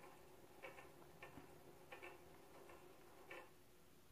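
Near silence with faint, short ticks, some in pairs, coming unevenly a little over once a second.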